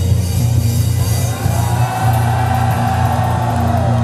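Amplified rock band playing live through the closing bars of a song: electric bass, drum kit with cymbals, and one long held high note from about a second in until near the end.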